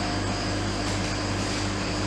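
Steady mechanical drone of running machinery: a constant low hum with faint steady tones over it.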